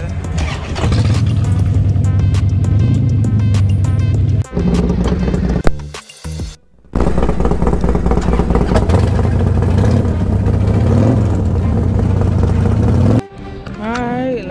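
Harley-Davidson Dyna Low Rider's V-twin engine running loud and steady with background music over it. The engine sound breaks off briefly about halfway through and comes back loud again.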